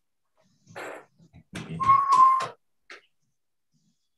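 An animal call: a short faint sound just under a second in, then a louder call about a second long holding one steady pitch, and a brief blip near the end.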